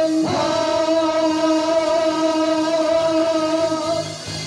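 Two men and two women singing a Vietnamese army song together through microphones and a PA over a karaoke backing track. They slide up into one long final note and hold it until it stops near the end.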